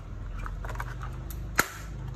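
Plastic hood of an MN82 Pro RC truck being handled and snapped shut: a few small plastic clicks, then one sharp snap a little past the midpoint as it latches.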